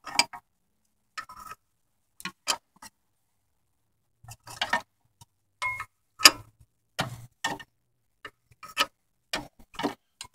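Sharp, irregular metal clicks and clinks from adjustable pliers working the large nut of a truck's engine fan clutch as it is turned loose off the water pump shaft, about one every half-second to a second, some in quick pairs.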